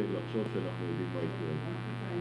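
Steady electrical hum, a low buzz with many overtones, in the microphone audio, with faint indistinct voices under it.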